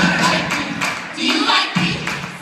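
Live gospel music from a youth choir and band: voices singing over a percussion beat, with the audience audible underneath.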